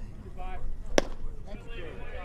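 A baseball smacking into the catcher's leather mitt once, about a second in, as a pitch is caught, with faint voices around it.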